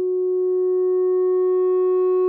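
Moog Subsequent 37 analog synthesizer holding one steady note that starts as a near-pure sine tone. As a knob is turned up, overtones steadily build in and the tone grows harsher and brighter, the sine being clipped toward a square wave.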